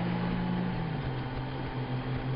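Touring motorcycle engine running at cruising speed, with wind and road noise; its low hum drops in pitch about a second in as the engine slows.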